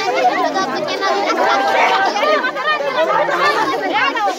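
Many people talking at once: a steady hubbub of overlapping voices from a group gathered close together.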